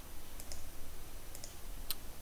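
Computer mouse clicking: a few light clicks, two quick pairs and then a single sharper click near the end, over faint room hiss.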